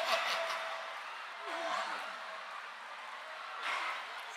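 Faint, indistinct voice in a reverberant room, with a sharp knock at the start and a short breathy rush near the end.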